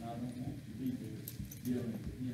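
A man's voice preaching from the pulpit, with a few faint clicks.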